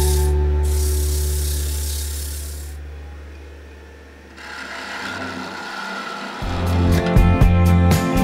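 Sandpaper rubbing against a wooden vase spinning on a wood lathe, over the lathe's steady hum, fading away over the first four seconds. A parting tool then scrapes as it cuts into the spinning wood to free the vase, and about six and a half seconds in, strummed guitar music starts.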